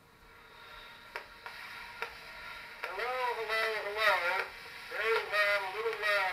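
Early phonograph recording played back: surface hiss that swells at first, a few clicks, then a thin, tinny voice with nothing in the low end from about halfway in. The sound quality is pretty awful.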